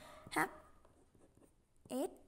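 Faint scratching of a ballpoint pen writing letters on paper.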